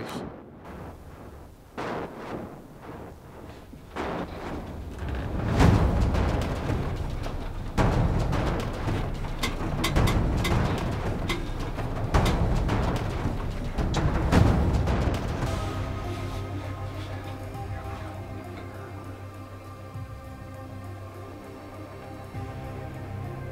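Background music with heavy, irregular drum hits through the middle, easing into softer held notes in the last part.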